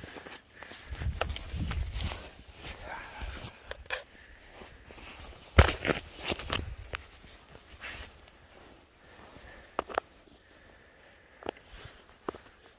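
Footsteps and scattered knocks and crackles outdoors, with one loud thump about halfway through and a low rumble at the start.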